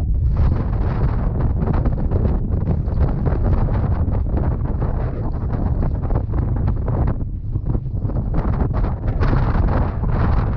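Strong wind buffeting the microphone: a continuous low rumble that rises and falls with the gusts.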